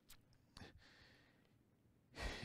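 Near silence: room tone with a faint breath or sigh near the start.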